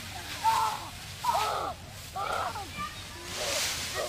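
Young children giving high-pitched squeals and shouts without clear words while playing in a pile of dry leaves. Near the end comes a crackling rustle of dry leaves being scooped and tossed.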